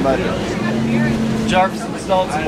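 Inside a moving city bus: the bus engine runs with a low rumble, and a steady low hum comes up about half a second in and holds for just under a second. Short bits of speech come at the start and again near the end.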